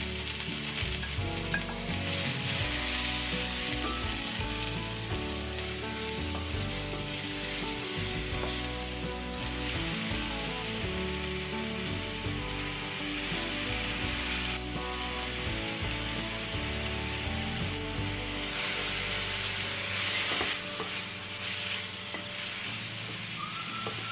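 Green pepper strips and scrambled egg stir-frying in oil in a cast iron skillet and stirred with a wooden spatula. The sizzle swells and eases in stretches over steady background music.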